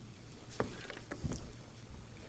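A Bible being handled on a wooden lectern while its pages are turned: a few short rustles and light knocks, over a faint steady low hum.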